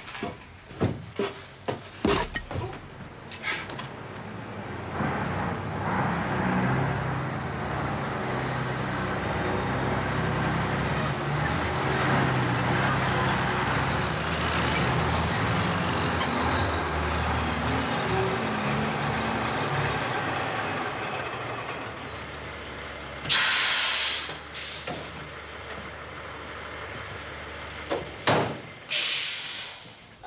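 Mack lorry's diesel engine running as the truck drives up, building and then holding steady. A short loud air-brake hiss comes about two-thirds of the way through as the truck stops. A few sharp knocks come at the start and again near the end.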